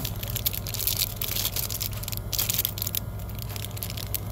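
Clear plastic packaging of a comb set crinkling as it is handled, in irregular crackles over a steady low hum.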